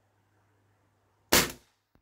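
Gamo Big Cat 1000E coil-spring air rifle firing one shot: a single sharp crack about a second and a third in that dies away within a few tenths of a second. A faint tick follows near the end.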